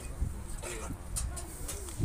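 A bird cooing, with voices in the background.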